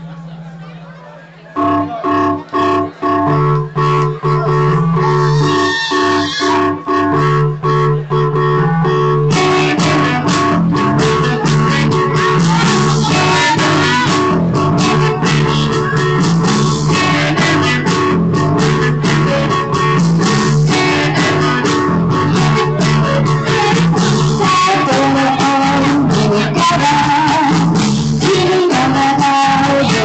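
Live rock band with electric guitars, keyboards and drums starting a song. A low steady hum comes first; about a second and a half in the band comes in with short stop-start chords, and from about nine seconds in the full band plays continuously.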